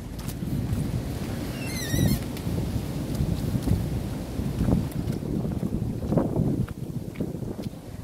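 Wind buffeting the microphone, a low uneven rumble that swells in gusts, with a brief high wavering note about two seconds in.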